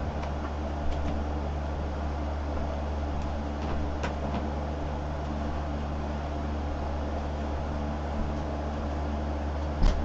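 Steady low hum with an even hiss underneath: constant room background noise. A few faint clicks.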